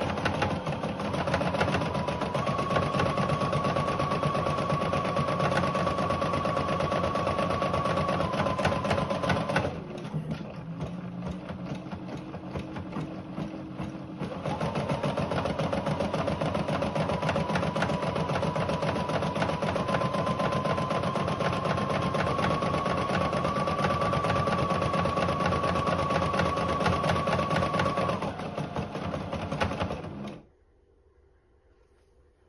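Rosew ES5 computerized embroidery machine stitching out a design, a fast, even needle rattle over a motor hum whose pitch shifts slightly. It goes quieter for a few seconds about ten seconds in, runs at full speed again, then eases and stops at the end as the first thread colour is finished.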